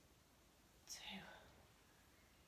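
Near silence, broken about a second in by one short, breathy vocal sound from the woman exercising, a hiss that falls in pitch.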